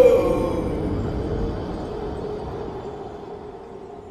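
The tail of a shouted "No!" drawn out with heavy echo, used as an edited sound effect. The held voice fades after about a second and a half into a long, dark rumbling decay that dies away steadily.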